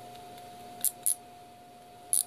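Digital micrometer's thimble being spun closed by hand, with two short, sharp, high clicks less than a second apart about a second in.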